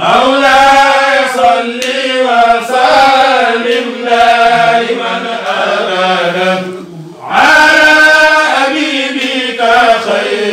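Devotional Arabic chant, voices intoning a melodic prayer litany, breaking off for a moment about seven seconds in and then resuming.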